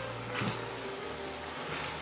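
Lo mein noodles and vegetables sizzling in a stainless steel sauté pan as they are tossed with a wooden spatula: a steady hiss, with a soft knock about half a second in.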